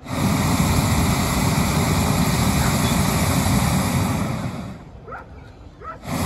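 Hot air balloon's propane burner firing: one long blast that cuts in sharply, holds for about four and a half seconds and trails off, then a second blast cutting in right at the end.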